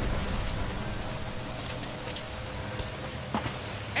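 Heavy rain from a film's soundtrack: a steady downpour that eases slightly over a few seconds.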